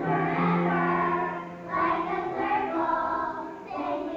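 A group of young children singing a song together, in sustained phrases with two short breaks between lines.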